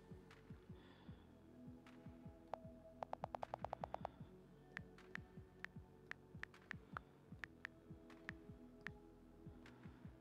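Faint key clicks from an iPad's on-screen keyboard. About three seconds in comes a fast, even run of about a dozen clicks, like a held delete key clearing a text field. Single clicks follow as a new word is typed, all over a faint steady hum.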